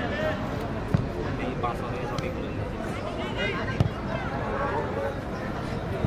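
Two sharp thuds of a football being kicked, about a second in and again near four seconds, over scattered shouts and calls from players and spectators around the pitch.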